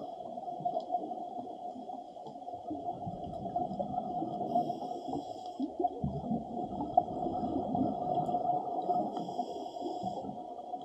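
Underwater sound picked up through a camera's waterproof housing: a muffled, steady rumble and gurgle of water, with a faint hiss that comes and goes about every four to five seconds.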